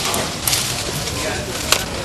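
Manual hedge shears snipping through hedge branches: two sharp snips a little over a second apart, under people's voices.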